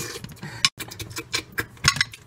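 Cookie-munching noises: a quick, irregular run of crisp clicks and crunches.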